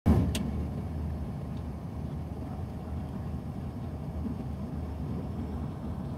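Steady low rumble of airliner cabin noise in flight, heard from inside the cabin, with one brief click just after the start.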